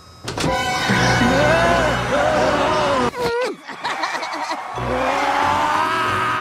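An old car's engine running, with background music over it.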